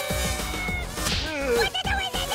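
Cartoon soundtrack: music with a quick whip-like swish sound effect as a figure hurtles past.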